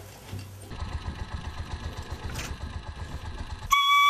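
A small engine running with a rapid, even chugging rhythm. Near the end a bamboo flute (dizi) comes in loudly, stepping down over a few notes.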